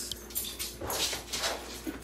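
A dog whimpering faintly over rustling handling noise.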